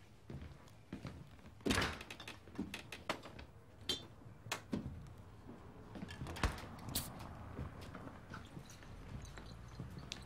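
Scattered knocks and thuds of a man moving about a kitchen and handling things, the loudest about two seconds in and another sharp knock past six seconds, with a brief high squeak around four seconds.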